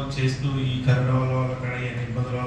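A man's voice amplified through a hand-held microphone, speaking in long, drawn-out stretches at a nearly level pitch.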